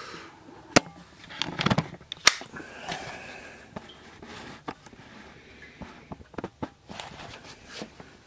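Scattered sharp clicks and light knocks of handling, with a duller thump about a second and a half in.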